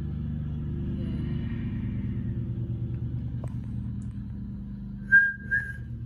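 A steady low mechanical hum with a slight regular pulse. About five seconds in come two short, high whistle-like tones.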